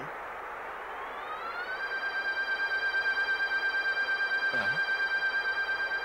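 An electronic sound effect: a tone that slides up in pitch, then holds one steady high note with a fast pulse of about seven beats a second. It is a comic sound cue.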